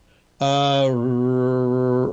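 A man's voice says "RH" and then holds a long, steady "uhh" of hesitation for about a second.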